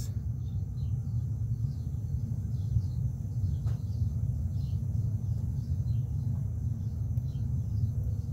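Steady low rumble of outdoor background noise, with faint high bird chirps scattered throughout.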